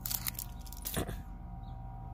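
Handling noise: a plastic bag crinkles briefly near the start and there is a bump about a second in, over a steady low hum.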